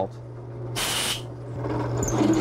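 A short burst of compressed air from a blow gun, about half a second long and a little under a second in, played on the drill bit and plastic pen blank to cool them so the plastic doesn't melt. A steady low hum runs under it.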